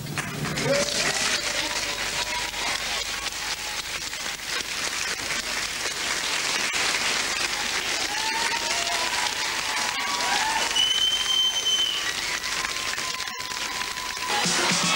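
A large indoor audience applauding steadily, with a few voices calling out over the clapping in the second half.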